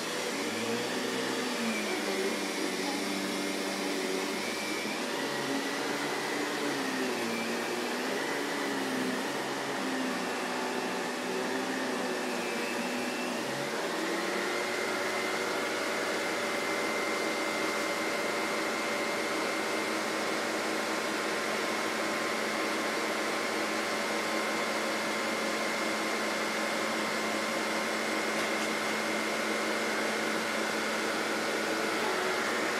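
Canister vacuum cleaner running steadily. Its motor hum wavers up and down in pitch for the first half, then steps up about halfway through and holds steady.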